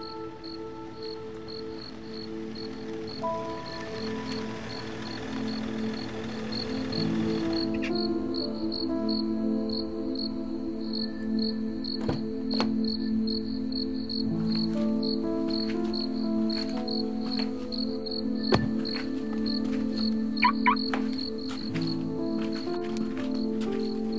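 A cricket chirping steadily, about two chirps a second, over a film score of sustained low notes with a slow melody. A few sharp clicks sound during the second half, and two short quick rising chirps come near the end.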